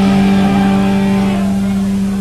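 Live rock band holding a distorted closing chord at the end of a song, electric guitars and bass ringing steadily on one low note.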